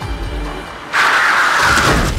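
Background music, then about a second in a sudden loud rushing screech of a car's tyres skidding under hard braking.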